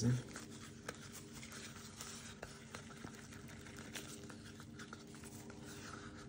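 Faint scraping and light ticking of a spatula stirring and scraping thick colour paste inside a paper cup, over a steady low hum.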